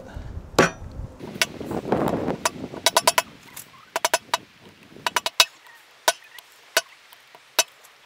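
Hammer tapping on an old dust seal used as a driving tool, seating a new dust seal into the gland of a Yanmar ViO75 excavator's bucket cylinder. The sharp taps come in quick runs of three or four, then singly about a second apart.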